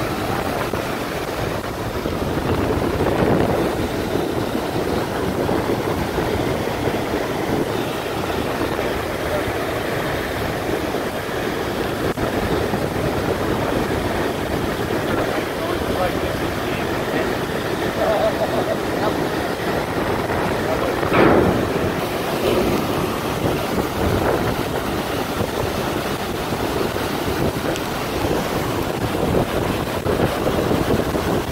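River water rushing steadily through a dam gate, with wind on the microphone; one brief louder surge or knock about two-thirds of the way in.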